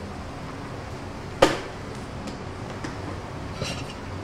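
A single sharp clink about a second and a half in, the loudest sound, ringing briefly, then a few faint clicks and knocks near the end, over a steady background hiss.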